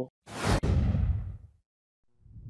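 Whoosh transition sound effect for an animated intro: it hits suddenly about a quarter second in, with a deep low end that fades away over about a second.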